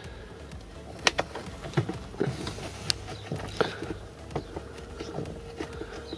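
Scattered sharp clicks and light scrapes of a plastic trim-removal tool prying at the plastic retaining clips of a car's lower dash panel, over a steady low hum.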